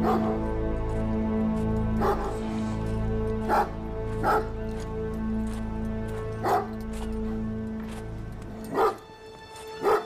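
A dog barking in single barks, six in all, spaced about one to two seconds apart, over sustained low notes of film score music. The music fades out shortly before the last bark, near the end.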